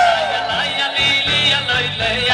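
A live band playing loud music: drums, electric keyboard and electric guitar. A gliding tone sweeps at the start, and a steady drum beat comes in about a second in.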